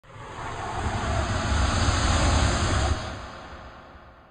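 Logo-intro whoosh sound effect: a noisy swell with a deep rumble underneath that builds over the first second, holds, then fades out from about three seconds in.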